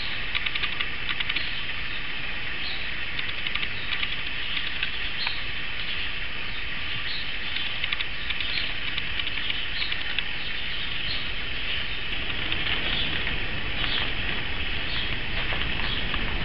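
Continuous high-pitched chirping and trilling, with brighter chirps coming about once a second, over a faint low rumble. A single sharp click sounds right at the start.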